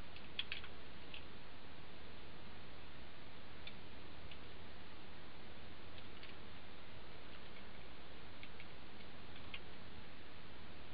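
Faint, irregular little clicks and taps from cooked turkey leg bones and meat being pulled apart by hand over a plastic cutting board, over a steady room hum.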